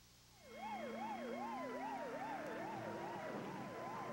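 Police car siren in a fast yelp, its pitch sweeping up and down about three times a second, starting after a moment of silence about half a second in.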